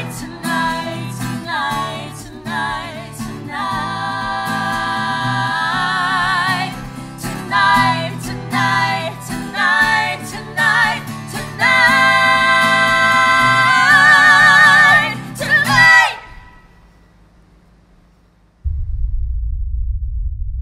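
Three women singing in close harmony over an acoustic guitar, building to long held notes with vibrato before the final chord ends about sixteen seconds in and dies away. After a short quiet gap, a low rumble starts near the end.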